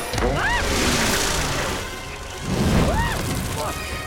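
Cartoon action sound effects: a rushing whoosh, then a deep boom about two and a half seconds in, under short yelps from the characters and score music.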